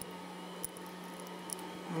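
Steady low room hum with two small clicks about a second apart, from a 3D-printed nylon gear being set in the jaws of a pair of pliers.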